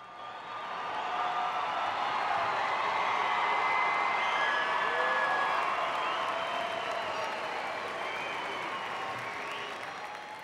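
Large arena audience applauding with scattered cheers, swelling about a second in and slowly dying away near the end.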